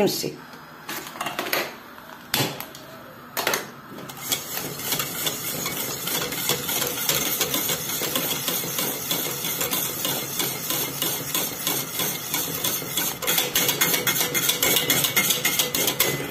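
Metal wire whisk beating a liquid mixture in a stainless steel pot: a fast, steady clatter of metal against metal that starts about four seconds in, after a few separate knocks.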